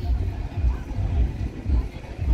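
Wind rumbling on a handheld microphone in uneven gusts, with people's voices faint in the background.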